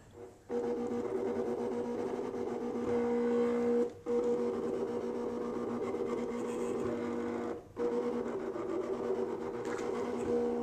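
Cricut electronic cutting machine cutting a snowflake out of a clear stamp sheet with its deep-cut blade: a steady motor whine as the carriage and rollers move. The whine breaks off briefly twice, about four seconds in and again near eight seconds.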